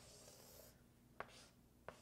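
Near silence with faint writing sounds: a soft scratch of a pen stroke in the first half-second or so, then two light clicks, about a second in and near the end.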